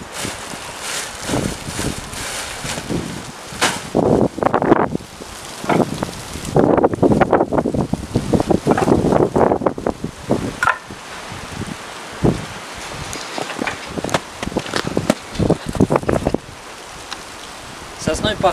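Split firewood and wooden boards being sorted and pulled from a woodshed pile, the pieces knocking and clattering together irregularly, with wind buffeting the microphone.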